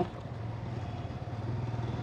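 Motorcycle engine running steadily at low road speed, a low even hum that grows slightly louder toward the end.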